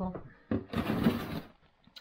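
A plastic freezer drawer being pulled open: a scraping slide about a second long, starting half a second in.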